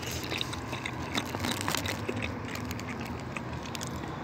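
A person chewing a mouthful of soft smoked salmon: small wet mouth clicks scattered through, over a steady low background hum.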